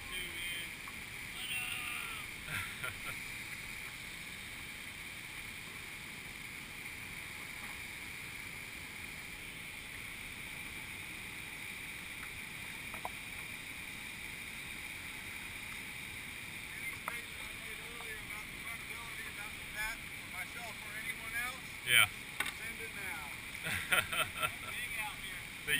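Steady rushing of a flooded river's whitewater rapids, with faint voices now and then in the second half.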